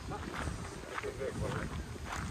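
Footsteps walking on a gravel path, about two steps a second, with faint voices in the background.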